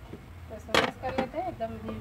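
A sharp knock on an aluminium cooking pot, followed by two lighter knocks, as fried fish pieces are turned in masala inside it.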